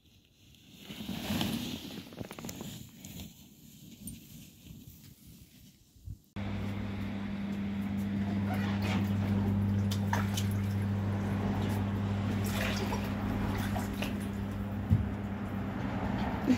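Skis sliding through snow as a skier passes close, a hiss that swells and fades. After a sudden cut about six seconds in, a hot tub's pump hums steadily while the water sloshes and drips.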